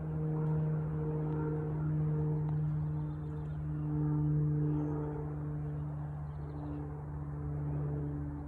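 A steady low mechanical hum with a couple of fainter steady overtones above it, like a running machine or motor.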